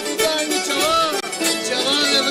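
A group of Cretan mandolins playing a traditional serenade tune together, with men's voices singing along.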